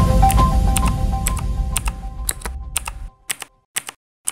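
Music fading out over about three seconds, overlaid by keyboard-typing clicks about twice a second; after the music stops, the typing clicks go on alone.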